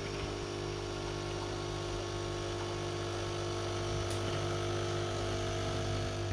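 Philips Senseo coffee pod machine brewing: its pump runs with a steady hum while coffee streams from the twin spouts into a mug.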